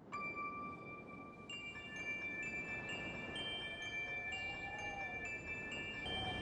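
Chime-like ringing notes of a logo sound effect, entering one after another and held over a low rushing noise, starting abruptly.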